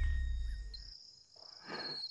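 Insects chirring in a steady, high-pitched trill that comes in just under a second in, over a low rumble that fades away in the first second.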